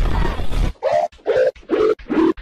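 Heavily distorted, pitch-shifted TV ident soundtrack put through a 'G Major' style audio effect: a loud, dense rumble, then from about a second in a run of short pitched notes, about three a second, stepping down in pitch.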